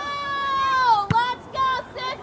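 A spectator's high-pitched shout held for about a second and dropping in pitch at the end, then a single sharp knock and a few shorter shouts.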